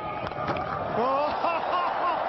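Cricket bat striking the ball with a sharp crack on a big swing, followed by a commentator's excited voice over crowd noise.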